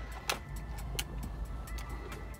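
Quiet low hum inside a parked car with a few soft clicks, as iced coffee is sipped through a plastic straw.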